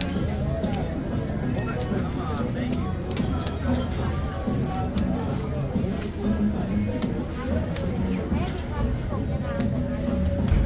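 Casino background music playing under murmured nearby talk, with scattered sharp clicks of casino chips being stacked and set down on the felt.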